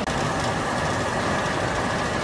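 Bakery production line running: a steady mechanical noise from the loaf conveyor and oven machinery, with a faint steady high whine.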